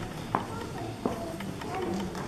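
Low murmur of voices from an audience, with a few sharp knocks or taps, one about a third of a second in and another about a second in.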